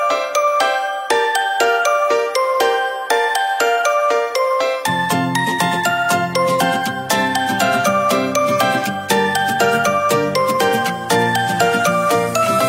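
Background music: a quick melody of short high notes, with a low bass part coming in about five seconds in.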